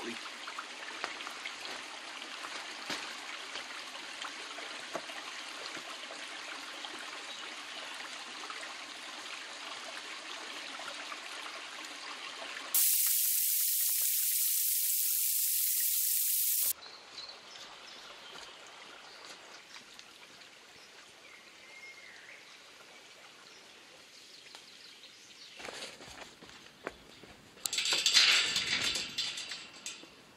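Steady rush of a shallow, stony woodland stream, then a few seconds of a much louder, hissing waterfall splash that starts and stops abruptly. A brief loud burst of noise comes near the end.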